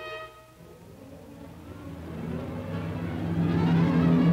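Orchestral film-score music: a held string chord dies away, then the orchestra swells in a long crescendo that grows steadily louder toward the end.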